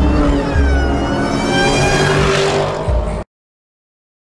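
A car engine revving hard as it accelerates past, its pitch gliding up and down. The sound cuts off abruptly a little over three seconds in.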